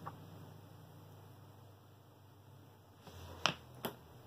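Mostly quiet room tone; near the end a brief soft rush of noise, then two sharp clicks a fraction of a second apart.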